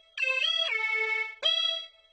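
Instrumental intro of a Neapolitan neomelodic pop song: a synthesizer lead plays a melody of held notes, each one cut off cleanly before the next.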